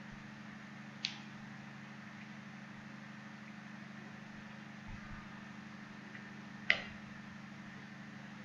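Low steady background hum with two short clicks, about a second in and a louder one near the end.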